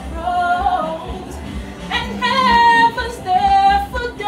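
A woman singing unaccompanied, with held and sliding notes; the loudest, highest passage comes in the middle.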